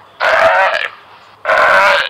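Sea lion barking: two hoarse, rough barks, each about half a second long, the second starting about a second and a half in.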